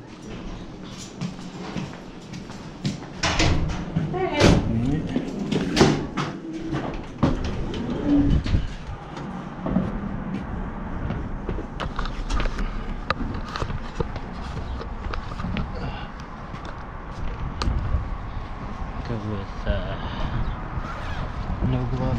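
Doors being opened and shut, a run of knocks and thuds in the first several seconds, then steady outdoor street background noise with scattered light clicks.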